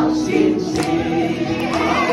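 A group of men and women singing a Chinese worship song together, holding long notes.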